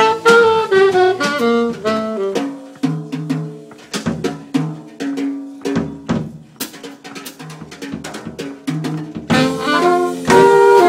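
Live jazz band: an alto saxophone phrase over drums, then a sparser stretch of drum hits over low held notes. The horns come back in loudly near the end.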